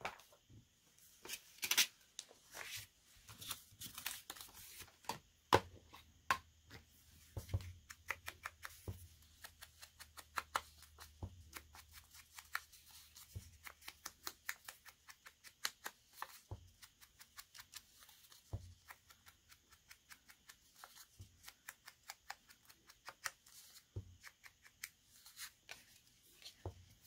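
Paper being worked by hand: a small printed paper cutout crackling and rustling in the fingers, in a long run of quick crackles. There are a few soft knocks on the desk.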